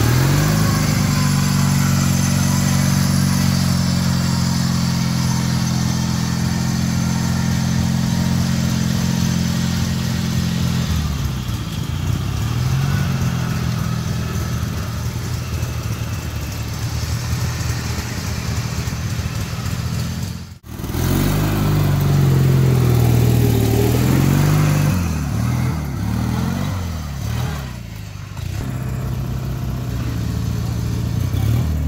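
Riding lawn mower engine running hard and steady at high revs, then revving up and down. A brief sudden dropout comes about two-thirds of the way through, followed by strong revving that eases off near the end.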